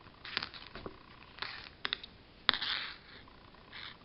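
Hands handling yarn and a knitted cord on a tabletop: a few scattered short rustles and clicks, the sharpest about two and a half seconds in.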